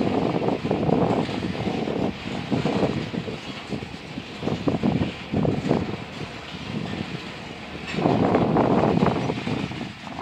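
Covered hopper cars of a freight train rolling slowly past, steel wheels rumbling on the rails, swelling louder for a moment near the end.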